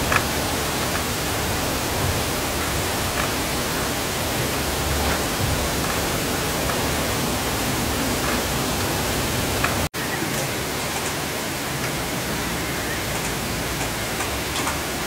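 Steady, even rushing hiss with no pitch. About ten seconds in it cuts out for an instant, and a few faint ticks follow.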